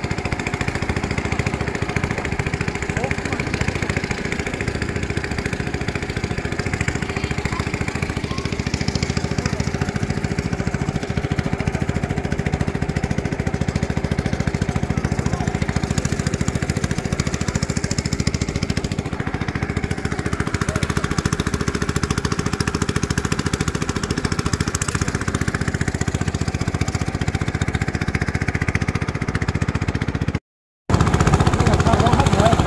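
Small petrol engine of a long-tail boat motor running steadily under way, a constant buzzing drone with no change in speed.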